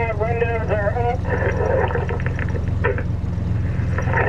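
A diver's voice over a topside diver-communication unit, narrow and tinny, for about the first second, then a rushing, crackly noise through the same unit. Under it all runs the steady low hum of the boat's engine idling.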